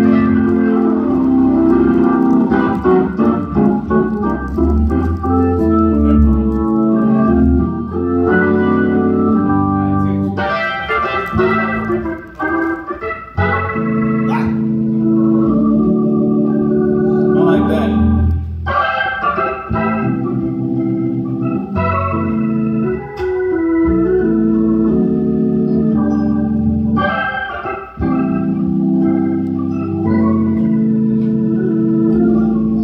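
Hammond-style console organ playing gospel: held chords with bass notes under them and quick runs and fills on top, with a couple of brief breaks.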